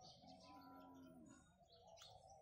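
Faint small birds chirping against a very quiet outdoor background, with a faint steady pitched tone held for about a second in the middle.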